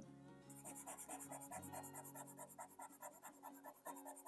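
Soft pastel pencil scratching on paper in quick, even back-and-forth strokes, about five a second, as olive pastel is laid over a black layer. The sound is faint, with soft background music under it.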